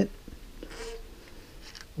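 Stiff radiator pressure cap being twisted by hand on the filler neck of an aluminum radiator: faint scraping, with a few light clicks near the end.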